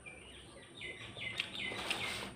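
A small bird chirping outside, a quick series of short, clear repeated notes, with a brief rustle near the end.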